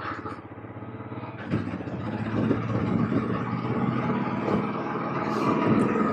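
Royal Enfield Classic 350 single-cylinder engine running as the motorcycle climbs a hill road. It gets louder about a second and a half in as it works harder.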